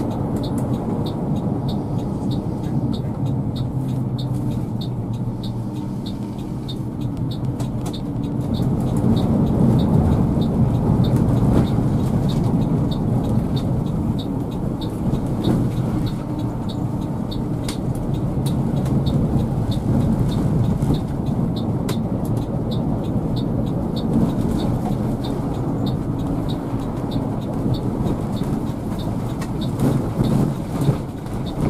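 A three-axle coach's diesel engine running under way, with road noise, heard from inside the cab. It grows louder about nine seconds in, and a light regular ticking runs through it about twice a second.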